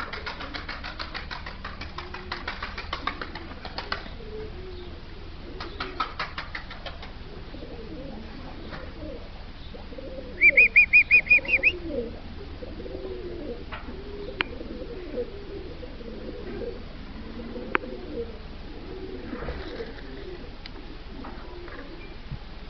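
Domestic taklaci tumbler pigeons: wings flapping in quick clattering strokes for the first few seconds and again briefly around six seconds in, then repeated low cooing. About ten seconds in, a loud, quick run of about eight high chirps stands out above them.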